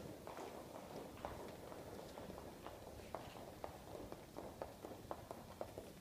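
Faint, irregular clicks of many dancers' shoes walking on a wooden parquet floor.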